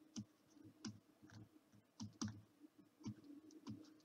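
Faint, irregular clicks, about six in four seconds: a stylus tapping on a pen tablet while handwriting.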